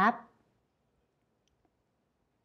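A woman's voice finishes a spoken Thai phrase in the first half-second, then near silence with a faint click about a second and a half in.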